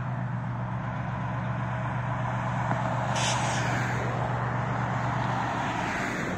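Diesel freight locomotive running with a steady low hum as the train approaches slowly, mixed with cars passing on the road alongside; a brief hiss about three seconds in.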